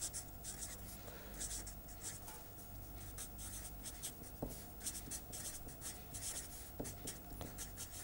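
Marker pen writing on paper: faint scratching in short, irregular strokes as words are written out.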